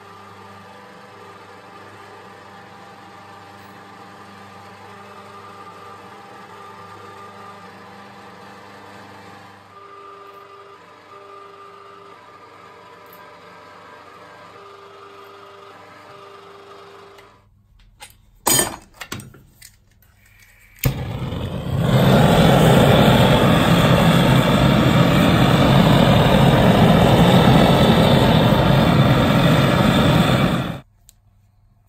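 Electric jeweller's rolling mill running with a steady hum, its tone shifting about ten seconds in and a higher tone coming and going in short stretches. The hum stops, a few sharp clicks follow, and a loud steady rushing roar then takes over and runs until it cuts off near the end.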